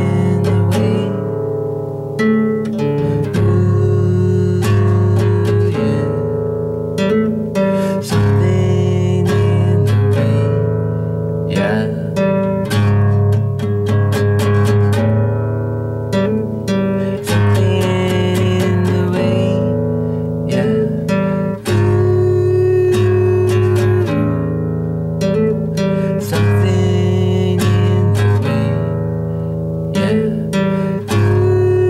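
Acoustic guitar played steadily in strummed chords, an instrumental passage between sung lines of a song.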